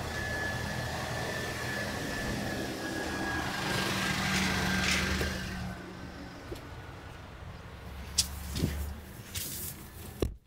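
Steady hum with a faint high whine from a DC fast charger's cooling fans and power electronics, fading out about six seconds in; then a few sharp clicks and a knock near the end.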